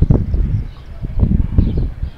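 Deep rumbling buffeting on the handheld camera's microphone, in two loud bursts about a second apart.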